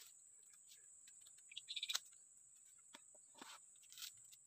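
Quiet forest ambience: a steady high-pitched insect drone, with a quick run of bird chirps a little under two seconds in and a few soft snaps and rustles in the undergrowth.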